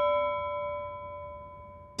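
A bell-like chime sound effect, several clear tones sounding together, ringing out and fading slowly away.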